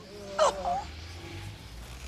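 A person crying out once in a short sobbing wail about half a second in, its pitch rising and then falling, followed by a faint low hum.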